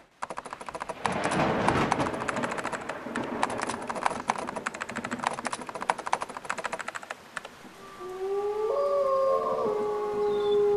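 Rapid, irregular clicking for about seven and a half seconds. It then gives way to held musical tones that slide upward and settle on a steady chord.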